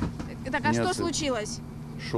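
A voice speaking quietly, over a steady low hum.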